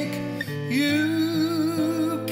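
A man singing a slow ballad to his own acoustic guitar. His voice slides up into one long held note a little before halfway, over separately sounding guitar notes.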